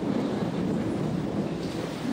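Steady, fairly loud background rumble with no distinct events.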